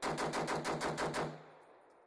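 A rifle fired in one rapid burst of about nine shots, roughly eight a second, lasting just over a second, with the report echoing away afterwards.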